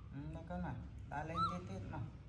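Baby macaque whimpering: a short, high squeak that rises and falls about one and a half seconds in, over softer, lower voice sounds.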